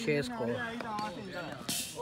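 Men's voices talking and calling across a cricket ground, with a single brief knock a little under a second in and a short hiss near the end.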